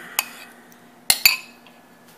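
Metal spoon clinking against a bowl while scooping mashed avocado out: a faint clink early, then two sharp, ringing clinks close together just after a second in.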